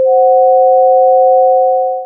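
Two pure sine tones held together, C and the F-sharp above it: a tritone, the dissonant interval. The lower tone sounds a moment before the upper one joins, and both hold steady.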